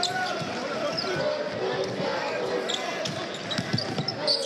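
Live basketball game sound: a basketball dribbling on a hardwood court, with short sneaker squeaks, over steady arena crowd noise.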